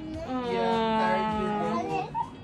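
A single drawn-out vocal note held for about a second and a half, its pitch rising slightly and then falling back.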